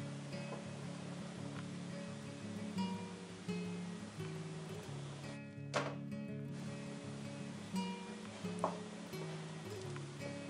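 Background acoustic guitar music, a picked melody of changing notes, with a couple of short clicks about six and nine seconds in.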